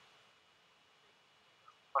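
Near silence: a brief pause in a man's speech with only faint background hiss, and his voice comes back right at the end.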